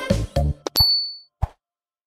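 Cartoon subscribe-button sound effects: a sharp click with a short, high bell ding, then a brief low thump, as the end of a music jingle fades out.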